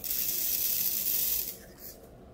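Small resin diamond-painting drills poured into a tray, a steady hiss that starts suddenly and lasts about a second and a half.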